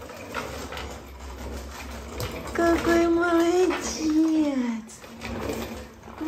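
Baby walker rolling on a wooden floor, with a low steady rumble. About halfway through, a drawn-out wordless voice is held on one note, then slides down.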